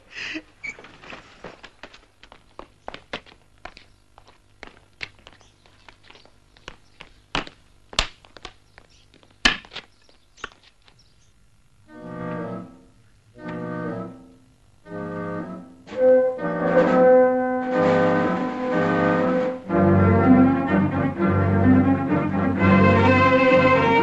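Irregular short knocks and thuds of digging with a hand tool for about eleven seconds. Then three short orchestral chords, and film-score music that runs on and grows fuller near the end.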